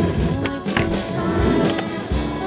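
Music soundtrack with skateboard sounds under it: wheels rolling on concrete and a few sharp clacks from the board.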